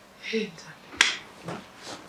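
A brief spoken sound, then one sharp click about a second in, the loudest thing heard, and a fainter click near the end.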